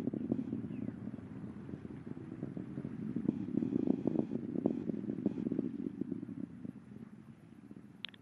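Low rumble with crackling from the Atlas V rocket in powered flight, fading away near the end as its solid rocket boosters burn out.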